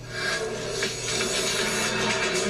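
Movie-trailer soundtrack: music with a loud rushing noise laid over it, coming in just after the start and holding steady.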